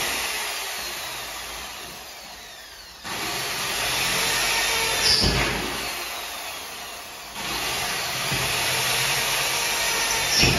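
Corded electric drill boring the screw holes for a casement lock in a door frame, run in bursts: the motor winds down with a falling whine, starts again abruptly about three seconds in and once more past seven seconds, with a short knock in between.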